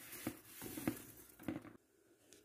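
Mini marshmallows tumbling into a plastic bowl: a soft rustle with a handful of light taps, stopping suddenly near the end.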